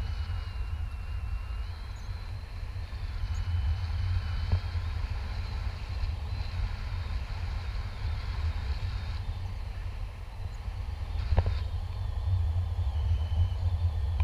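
Wind buffeting an action camera's microphone in paraglider flight, a steady low rumble. Two brief knocks are heard, one about four seconds in and a louder one about eleven seconds in.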